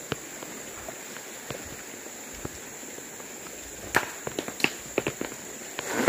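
Footsteps on loose river stones, with sharp clacks of rock against rock: a few scattered steps at first, then a quicker run of clacks about four seconds in. A steady high-pitched drone runs underneath.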